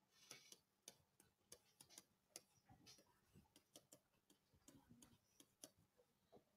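Near silence broken by faint, irregular small taps and clicks of a stylus writing by hand on a digital writing surface.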